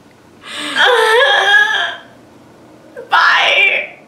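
A young woman's voice letting out a drawn-out, wavering wail of mock crying at being overwhelmed, lasting more than a second. A second, shorter wail follows near the end.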